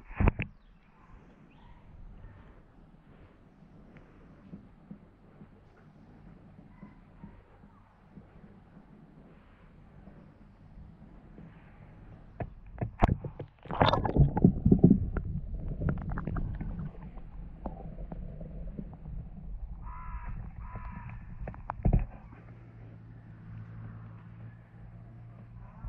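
Close-up sounds of a beaver feeding in shallow water right by the microphone: low rumbling, handling and water noise, with sharp clicks at the start and again near the end. About 13 seconds in there is a loud spell of knocking and rumbling noise that lasts about four seconds.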